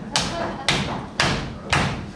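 Audience stomping a steady beat on the floor, with hand claps, about two beats a second.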